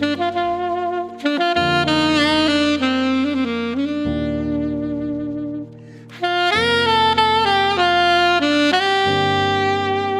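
Alto saxophone playing a slow vocal melody phrase by phrase, with vibrato on the held notes and a short breath break a little past halfway, over a backing track of sustained chords.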